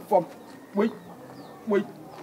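Three short vocal exclamations from a person, near the start, just before one second in and near the end, over a quiet background.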